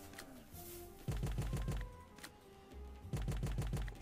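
Pragmatic Play's Gold Oasis online slot game audio: game music under two short bursts of rapid clicking as the reels spin and stop, about a second in and again about three seconds in.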